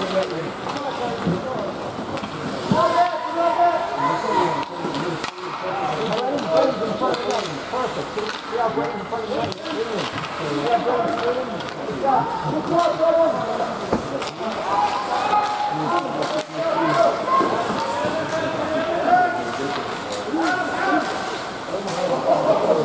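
Indistinct voices of spectators and players in a hockey rink, overlapping throughout, with a few sharp knocks from play on the ice.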